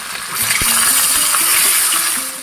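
Marinated fish pieces sizzling loudly in hot oil in a kadai, a steady frying hiss that dips briefly at the start as a piece goes in, with a single knock about half a second in.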